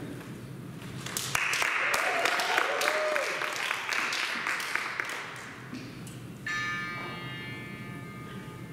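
Audience clapping, with a whoop in it, for about four seconds, then a single steady note starts suddenly near the end and is held: a pitch pipe giving an a cappella group its starting pitch.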